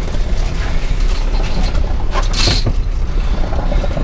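Wire crab pot creaking and rattling as it is carried aboard and set down on the boat deck, over a steady low wind rumble on the microphone. There is a short hissing burst about two and a half seconds in.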